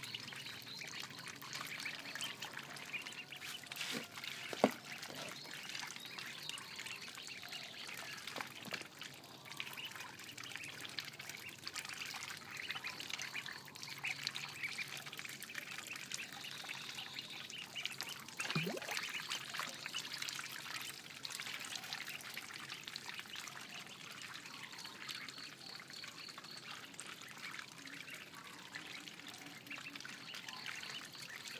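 A brood of ducklings peeping continuously in many small high chirps. One sharp knock about four and a half seconds in.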